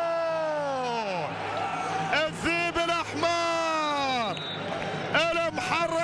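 Arabic football commentator's drawn-out goal shout: a long held note that falls away about a second in, followed by further excited shouted calls, each dropping in pitch.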